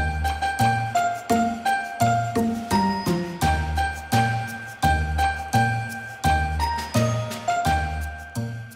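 Upbeat instrumental background music with bright bell-like notes over a steady beat, about two strikes a second, and a bass line.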